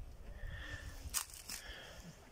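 Outdoor woodland background with low handling rumble on a phone microphone and a bird calling a few times in short, high, steady notes. One sharp click a little past halfway is the loudest sound.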